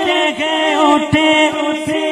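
A man singing an Urdu naat (devotional song) unaccompanied, his melodic line held and ornamented over a steady background vocal drone that dips briefly again and again.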